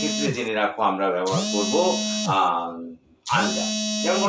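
A man's voice talking in a flat, drawn-out, buzzy tone, with a short pause about three seconds in.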